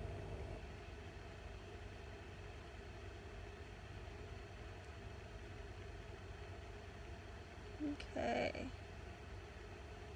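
Quiet room tone: a steady low hum with faint hiss. About eight seconds in there is one short voiced sound, like a brief hum.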